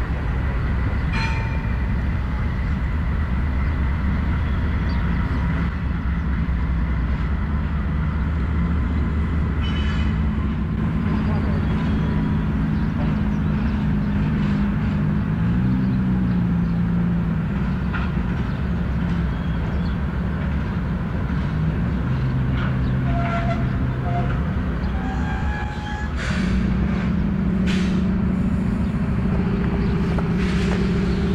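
Norfolk Southern diesel locomotives running light across a steel truss bridge: a steady diesel engine drone whose pitch shifts in the middle and again near the end, with a few sharp clicks from the wheels and rails.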